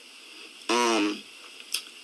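A man's voice giving one short drawn-out syllable, like a hesitation sound, a little under a second in, over low hiss, with a faint click near the end.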